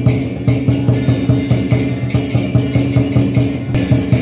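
Taiwanese temple-procession music, drums and percussion beating a steady fast rhythm, about three to four strokes a second, over sustained low tones.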